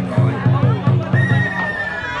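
Traditional festival drum beaten in a steady rapid rhythm, about four deep strokes a second, that stops about a second and a half in. A long steady high tone starts just before the drumming ends, over crowd voices.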